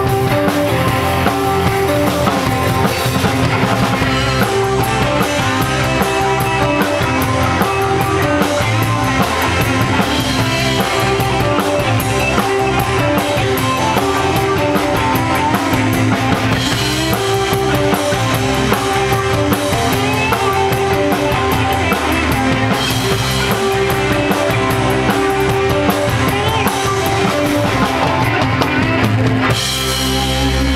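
Live band playing, with a drum kit keeping a steady beat under sustained pitched chords.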